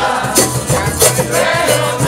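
Live acoustic folk music from a group: several voices singing along with flute and stringed instruments, over a steady percussive beat about twice a second.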